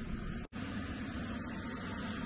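Steady outdoor background noise with a fluctuating low rumble, typical of wind on the microphone, broken by a split-second dropout to silence about half a second in.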